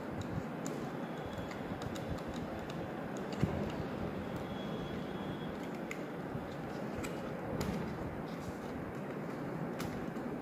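Scattered light clicks and ticks of enamelled copper wire and a plastic stator frame being handled during hand winding, with a small thump about three and a half seconds in, over a steady background rumble.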